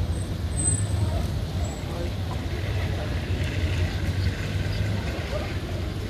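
Outdoor ambience of a city square: a steady low rumble, with faint voices of people nearby.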